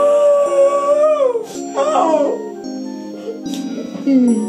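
A woman wailing in grief: one long held cry that falls away after about a second and a half, then a shorter, wavering cry, over background music.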